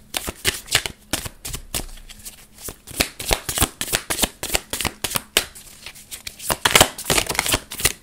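A deck of tarot cards being shuffled by hand: a fast run of flicks and snaps of card against card, busiest near the end.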